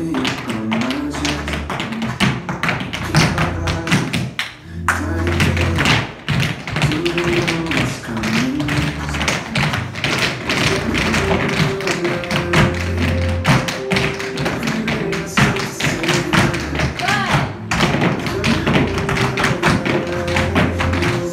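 Tap shoes of several dancers striking a hard studio floor in fast, rhythmic clusters of taps, over a recorded song with a steady bass.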